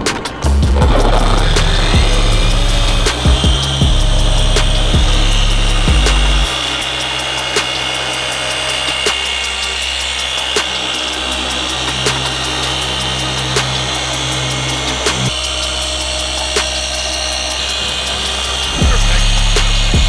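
Background music with a steady beat over a Rupes dual-action polisher, which spins up just after the start and runs with a steady whine as it polishes black car paint in a second polishing pass.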